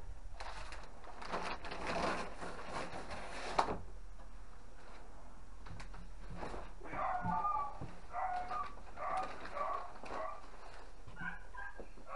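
Cardboard box and packaging rustling and scraping as a landing net is pulled out of it, ending in a sharp knock. Then dogs barking in the background, a string of short barks in the second half.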